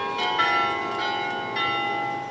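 Bells of the Martinitoren tower ringing: several strikes of different pitches, a few in quick succession near the start and another about one and a half seconds in, each ringing on and overlapping the others.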